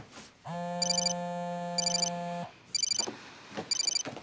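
Phone ringtone: a steady electronic buzzing tone held for about two seconds, then breaking off, with short high chiming pulses repeating about once a second. A few soft knocks come near the end.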